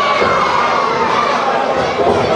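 Crowd with many children shouting and cheering loudly and without a break, many voices overlapping.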